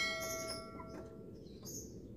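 A bell-like chime from a subscribe-button sound effect, ringing on one bright pitch and fading out over about a second and a half. Short high bird chirps come near the start and again near the end.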